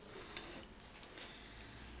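A few faint, light clicks of a metal ladle being set down in a steel pot of thick sauce, over quiet room noise.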